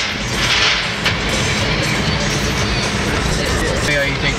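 Music playing over steady road and engine noise inside a moving car's cabin.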